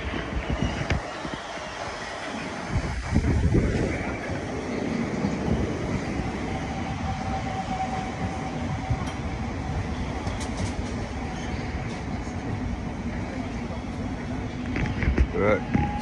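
London Underground train running along the platform, a continuous rumble that swells loudly about three seconds in, with a steady whine for a couple of seconds midway.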